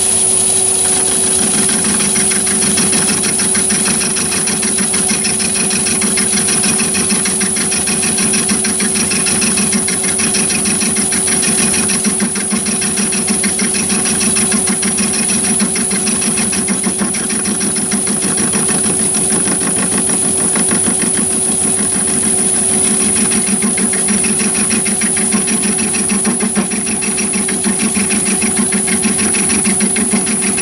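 Myford lathe running at about 390 rpm with an end mill in the chuck, milling a workpiece on the carriage: a steady machine hum with a fast, even pulsing from the cut and a constant high whine.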